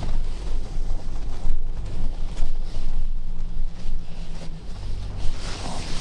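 Wind buffeting the camera microphone in uneven gusts, a loud low-pitched noise that rises and falls throughout.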